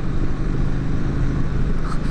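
Triumph Street Twin 900's parallel-twin engine running steadily at highway cruising speed, heard from the rider's seat with a steady rush of wind noise.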